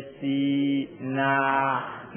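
A Burmese Buddhist monk's voice chanting in long, held notes during a sermon: one steady note, then a second that starts about a second in. The recording is narrow-band and sounds thin.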